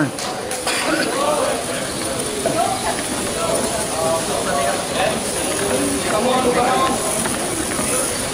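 Spectators' voices: a man urging "Come on, go," then scattered overlapping chatter and calls from the onlookers over a steady background noise.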